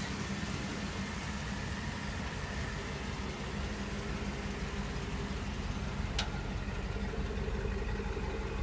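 2003 Chevrolet Tahoe's V8 engine idling steadily, sounding pretty nice, with a single sharp click about six seconds in.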